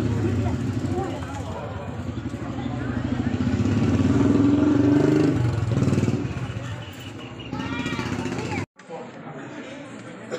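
An engine running close by, its pitch and level rising and falling, with people's voices over it; the sound cuts off abruptly near the end.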